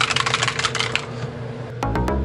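A rapid run of clattering clicks that stops about a second in, then background music with a steady beat starts near the end.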